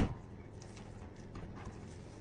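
A knife and hands working a raw whole chicken on a plastic cutting board: the fading tail of a loud knock right at the start, then a few faint taps and knocks.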